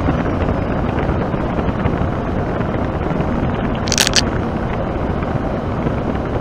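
Steady road, engine and wind noise in a lorry cab cruising at about 46 mph, with a brief sharp clicking rattle about four seconds in.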